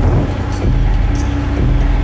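Hard minimal techno playing: a steady, dense low bass line under sparse short high percussion ticks in a repeating pattern.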